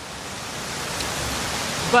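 A small waterfall rushing steadily down stone steps, a continuous hiss of falling water that grows gradually louder.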